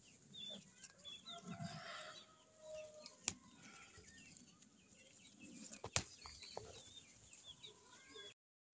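Faint bird calls: short chirps repeating throughout, with a few lower calls in the first three seconds. Two sharp clicks, about three and six seconds in.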